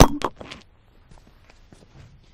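A sharp click, then a few short knocks and faint scattered taps over quiet room tone.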